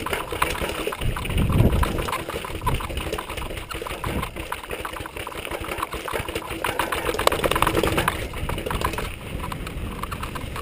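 Mountain bike clattering down a rocky trail and stone steps: rapid, irregular rattles and knocks from the chain, frame and tyres striking rock. A deeper rumble comes between about one and two seconds in.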